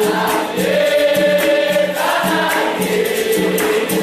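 Capoeira song in the São Bento Grande rhythm: a chorus of voices singing sustained notes over berimbau and pandeiro, with a quick, steady percussion beat.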